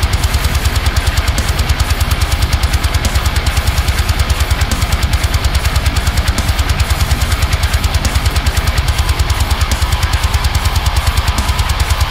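Aristides eight-string electric guitar tuned to drop F, playing a rapid, evenly spaced run of palm-muted low chugs through a high-gain Neural DSP amp-sim plugin, locked to drums in a full metal mix.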